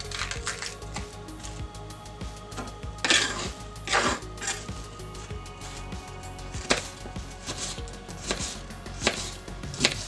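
Small paring knife slicing an onion on a cutting board: irregular knife strokes through the onion and onto the board, roughly one a second, the loudest about three and four seconds in.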